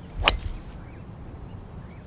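Golf driver swung through and striking a teed-up ball: a brief swish into one sharp crack of impact about a quarter second in.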